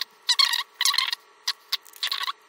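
Hands handling a micro SIM card and an iPhone 4's SIM tray: several short, scratchy scrapes and rustles of plastic and metal.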